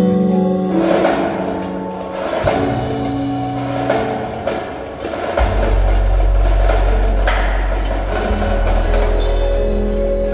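Indoor percussion ensemble playing: marimbas and other mallet keyboards over drums and cymbals. A deep sustained bass note comes in about halfway through, and short high bell-like notes sound near the end.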